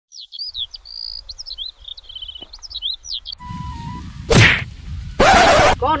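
A small bird chirping in rapid, quick-sweeping high notes for about three seconds. It gives way to louder outdoor background with a sharp whack a little after four seconds and a louder half-second burst of noise about five seconds in.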